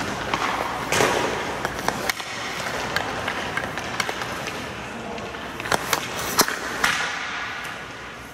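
Hockey skate blades scraping and carving on the ice, with several sharp clacks of a stick blade hitting pucks, the loudest in the second half, in an indoor rink.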